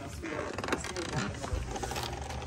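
Glass storm door being opened: its handle and latch mechanism working, with a click about one and a half seconds in.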